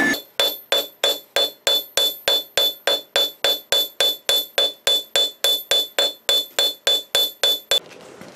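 Hand hammer striking hot steel on an anvil in a steady, rapid rhythm of about three to four blows a second, flattening the bar. A high ring from the anvil carries through between the blows. The hammering stops just before the end.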